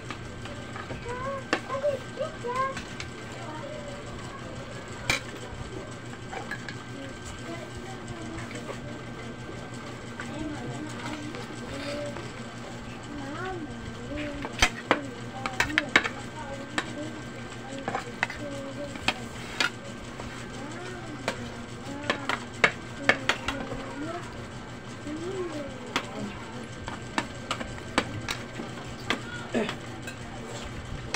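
Metal spoons clinking and scraping against bowls as soup is eaten, with sharp clinks coming in clusters mostly in the middle and latter part, over a steady low hum.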